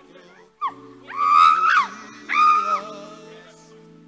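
A woman's high-pitched wailing cries: a short yelp, then two long loud wails that rise and fall, over sustained background music.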